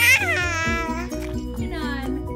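A baby's high-pitched squeal of delight right at the start, then a shorter squeal falling in pitch near the end, over background music with a steady beat.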